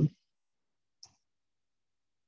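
Near silence, broken by a single short, faint click about a second in, after the end of a drawn-out "um".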